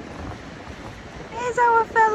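Wind buffeting the microphone over steady surf on an open beach. Near the end a voice calls out, one long high drawn-out call held on a steady pitch.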